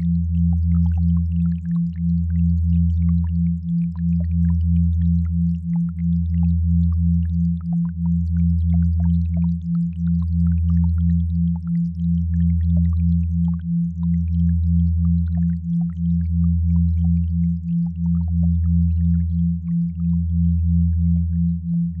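Binaural-beat sine tones: a deep steady hum that dips about every two seconds, under a higher tone that pulses quickly, a few times a second.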